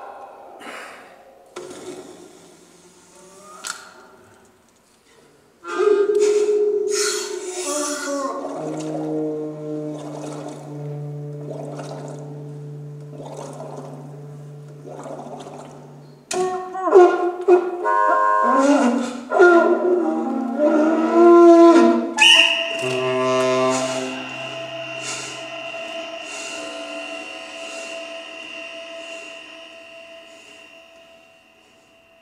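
Playback of an experimental piece for air-driven instruments: saxophone, whistles and foot-pump bellows. It opens with sparse, breathy air sounds. About six seconds in, layered held tones, low drones and sliding pitches begin, and a high steady whistle-like tone enters about two-thirds of the way through and holds.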